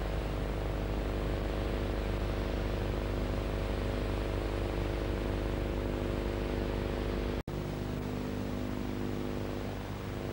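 Steady low hum with an even hiss, unchanging throughout, cut off in a sudden brief dropout about seven and a half seconds in.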